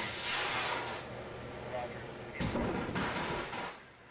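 A small lightning-triggering rocket launching with a rushing whoosh. About two and a half seconds in comes a louder, deeper crack and rumble of thunder from the lightning it brings down the trailing wire.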